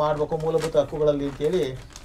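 A man speaking in a low voice, with drawn-out syllables.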